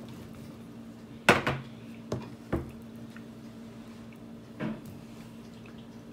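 Kitchen utensils knocking against a plastic cutting board on a wooden table as a rolling pin is put aside and a table knife taken up: a sharp knock a little over a second in, two lighter knocks around two seconds, and a soft dull one near five seconds.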